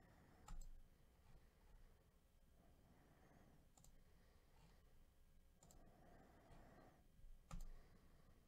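Faint computer mouse clicks, about four single clicks a couple of seconds apart, over near silence.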